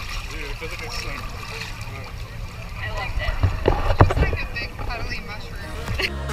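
Wind rumbling on the microphone, with faint voices of people nearby and a few short knocks about three and a half to four seconds in.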